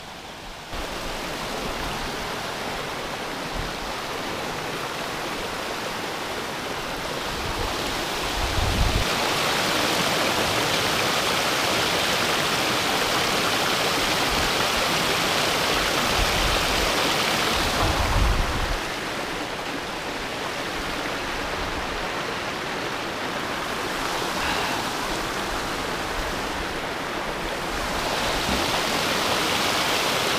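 Mountain stream rushing and splashing over boulders, heard close up as a steady wash of water noise. It grows louder about eight seconds in, eases back for a while after the middle, then rises again near the end, with a couple of short low bumps along the way.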